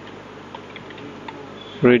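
A few faint computer-keyboard keystrokes, scattered clicks over a steady background hiss and hum, as a word is typed into a code editor. Near the end a spoken word comes in.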